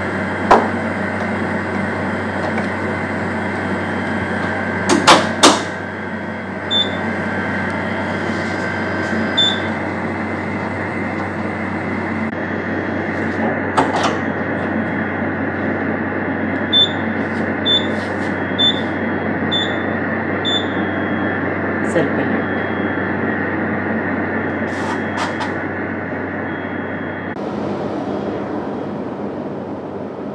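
Steady hum of a refrigerated laboratory centrifuge, with sharp clicks and knocks as plastic centrifuge tubes are set into the rotor. Short high beeps from its control-panel keys sound twice, then about five times roughly a second apart, as the run is set up.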